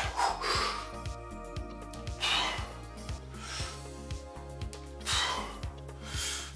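Sharp, forceful exhalations from a man straining through dumbbell press reps, a few times, about one every three seconds, over background music with a steady bass beat.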